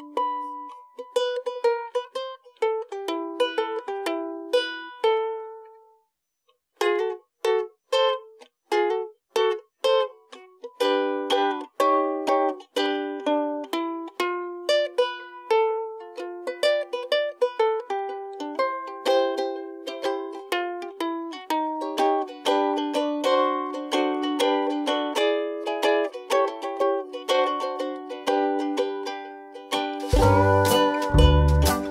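Ukulele playing an instrumental passage of a Hawaiian song: picked notes that stop briefly about six seconds in, then resume and grow denser.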